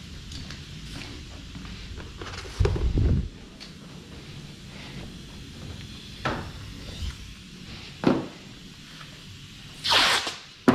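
Handling noises as rolls of masking tape are worked: a loud dull thump about three seconds in, then a few short, sharper knocks, over a low steady hum.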